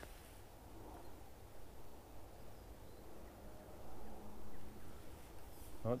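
Quiet outdoor background with a steady low rumble and a faint, short, steady tone about four seconds in.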